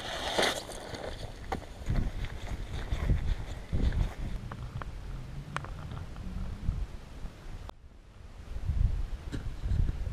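Wind buffeting an outdoor camera microphone: an uneven low rumble with a few light clicks. It drops out briefly near the eight-second mark, then comes back.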